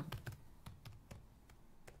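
Faint computer keyboard typing: a quick, uneven run of about half a dozen key presses, entering a stock code into charting software.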